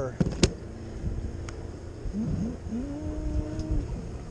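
Two sharp knocks in quick succession in the first half second as a snapper is handled on a plastic fish-measuring board, then a faint voice murmuring briefly, over a steady low rumble.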